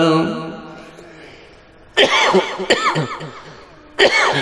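A man's chanted prayer over a microphone ends and its echo fades. About two seconds in comes a sudden cough-like vocal burst, repeated by a strong echo, and another starts at the end.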